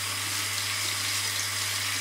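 Bathroom tap running into a washbasin while a child rinses her hands under the stream: a steady splashing hiss, with a low steady hum beneath it.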